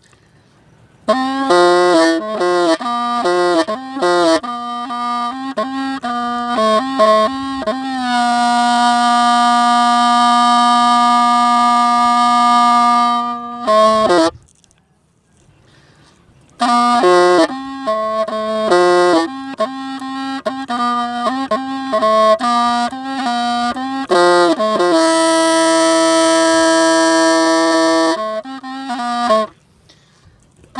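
Hmong bamboo free-reed pipe (raj nplaim) playing a slow, mournful melody with a reedy tone: moving phrases, a long held note from about eight seconds in, a pause of about two seconds near the middle, then more phrases and another long held note near the end.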